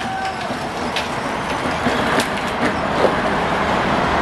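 Battery-powered children's ride-on toy car driving away, its motor and hard plastic wheels making a steady rolling noise over the patio pavers, with a few faint clicks.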